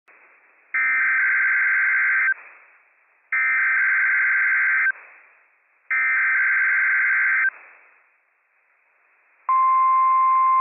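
NOAA Weather Radio Emergency Alert System test signal: three identical bursts of SAME digital header data, each about a second and a half of buzzy screeching, followed near the end by the steady 1050 Hz weather radio warning alarm tone.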